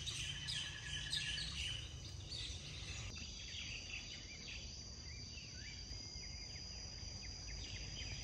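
Quiet outdoor ambience: a steady high-pitched insect drone with scattered bird chirps over a faint low rumble.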